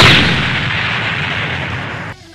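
Explosion sound effect: a blast at the start, then a long noisy tail that fades slowly and cuts off abruptly at the end.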